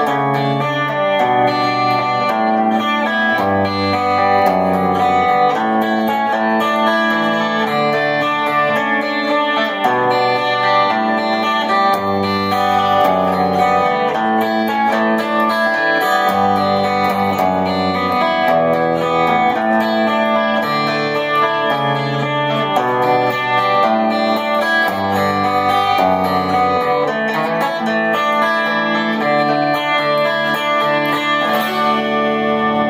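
Electric 12-string guitar finger-picked slowly with a pick and metal fingerpicks, rolling through a chord scale in D that walks down, its bass note changing about every second.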